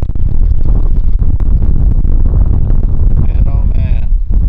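Strong gusty wind buffeting the microphone: a loud, uneven low rumble. A voice comes in briefly near the end.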